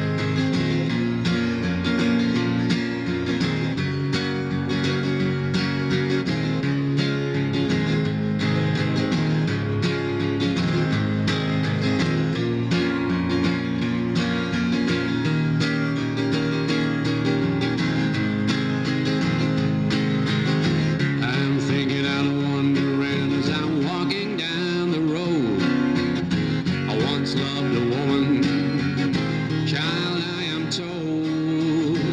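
Steel-string Martin acoustic guitar strummed steadily through a chord progression, an instrumental break in a folk song with no singing.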